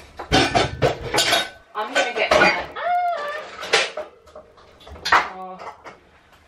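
Kitchen dishes and cutlery clattering as they are handled: a quick run of knocks and clinks in the first half, then a few single clinks.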